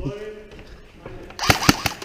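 A man's voice trailing off, then a quick run of three or four sharp knocks about a second and a half in.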